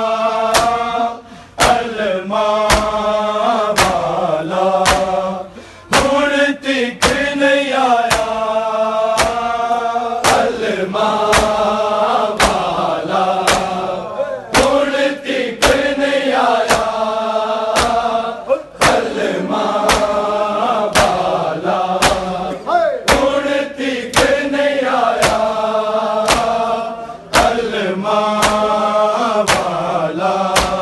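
A group of men chanting a noha, a Muharram lament, in unison, with loud sharp slaps of hands striking bare chests in a steady beat (matam). The chanted phrases rise and fall with short breaks between lines, and the chest-beating keeps time throughout.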